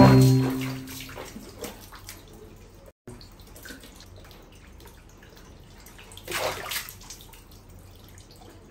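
Water splashing hard in a plastic basin as a baby monkey leaps out of it, with a short ringing musical tone over the splash at the start. Faint drips follow, then a second, smaller splash about six and a half seconds in as the monkey gets back into the water.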